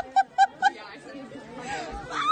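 A woman's voice lets out four quick, short, evenly spaced cries in the first second, then fades to quieter voices.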